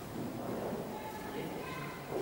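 Quiet room noise in a church during a pause in speech, with faint, indistinct low sounds and no clear event.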